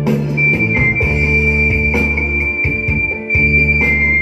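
Vietnamese funeral ceremonial music: a high melody held on long, piercing notes that step slightly in pitch, over a low steady drone with regular percussion strikes.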